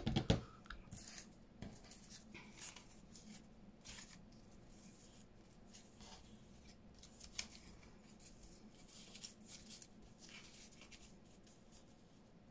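Paper rustling and light taps as paper pieces and a lace paper doily are moved and pressed flat by hand, with a sharper knock right at the start.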